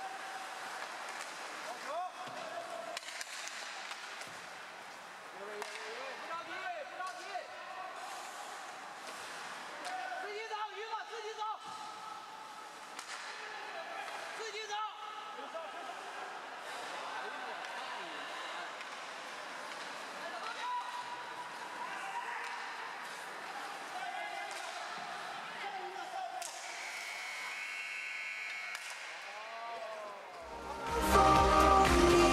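Ice hockey game in play: sticks and puck giving repeated short clacks and knocks, some against the boards, over scattered voices of players and spectators.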